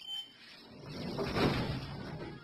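Schindler elevator car doors sliding on their track, a rush that swells to a peak about one and a half seconds in and then eases, as the door sensor is tested and the doors reopen. A short high beep sounds right at the start.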